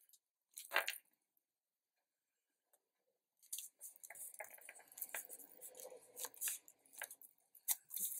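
Paper and card handled and pressed down by hand on a scrapbook page: a short rustle, a pause, then a few seconds of crisp rustling and light clicks as the pieces are pressed and shifted.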